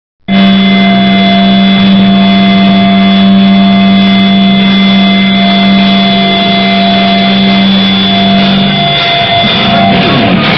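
Loud, distorted sustained drone from a hardcore band's amplified electric guitars and bass, a held note with steady ringing tones over it. It changes about nine seconds in as the song gets going.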